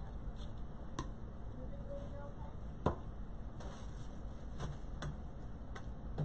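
A few light, sharp knocks and clicks as ribbon spools are picked up and set down on a craft cutting mat, the loudest about three seconds in, over a low steady room hum.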